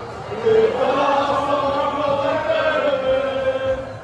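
A crowd of voices singing together in unison, holding long drawn-out notes.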